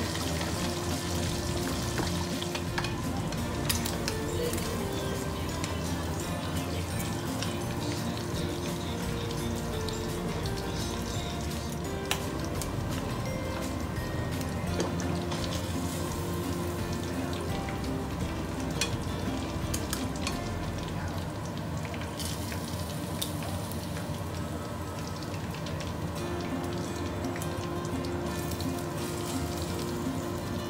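Fish frying in a pan of hot oil: a steady sizzle, with a few brief clicks of metal tongs against the pan. Background music plays underneath.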